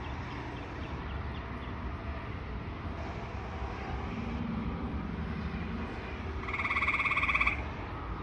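A frog calling once near the end: a single pulsed trill lasting about a second.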